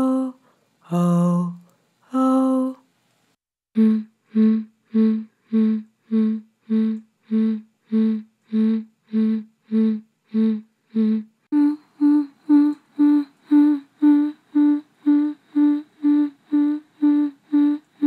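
Dry-recorded woman's voice from vocal pulse samples, lightly EQ'd and compressed. First come long sung 'oh' notes alternating between two pitches, which stop about three seconds in. After a short gap come short hummed 'hmm' pulses repeating on one pitch, which jump higher and slightly faster about eleven seconds in.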